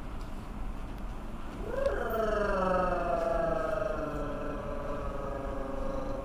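A single long pitched tone with overtones starts about a second and a half in, rises briefly, then slides slowly downward for about four seconds, wavering as it goes.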